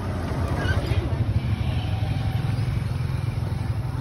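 Small motorcycle-type engine of a motorized tricycle running steadily close by, with faint voices in the background.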